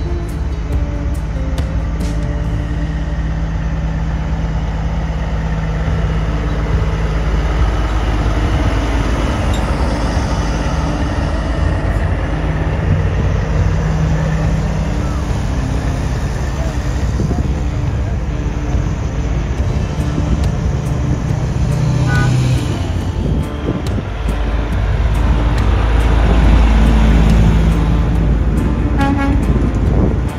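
Diesel semi trucks driving slowly past one after another, their engines rumbling low, with air horns sounding. It is loudest near the end as a truck passes close.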